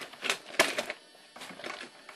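A quick, irregular run of about six sharp clicks and knocks, the loudest a little over half a second in.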